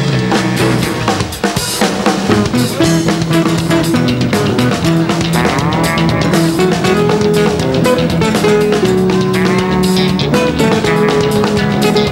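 Live band music: electric bass guitars playing melodic lines over a rock drum kit.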